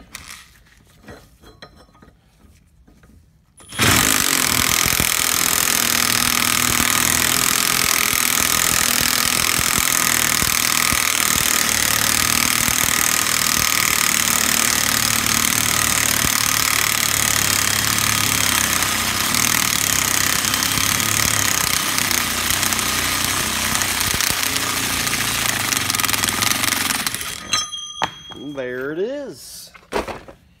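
Cordless impact wrench hammering continuously, driving a puller's forcing screw to press a tight, pressed-on pulley off a Ford CIII power steering pump shaft. It starts suddenly about four seconds in and stops abruptly after about 23 seconds, followed by a few light metal clinks.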